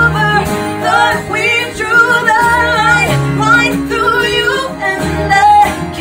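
Live acoustic pop performance: a woman's lead vocal with a backing singer and acoustic guitar accompaniment, the voice gliding between notes.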